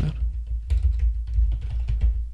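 Typing on a computer keyboard: a short run of keystrokes, with a steady low hum underneath.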